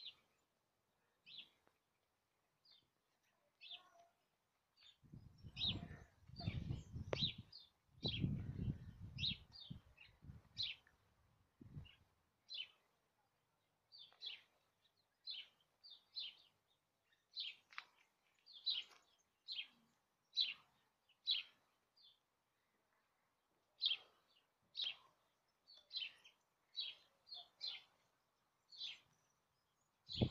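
A small bird chirping over and over, faint short high chirps about every half second to a second. A low rumble comes in from about five to twelve seconds in.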